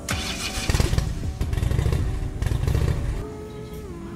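Motorcycle engine revving in three loud surges, with background music coming back in near the end.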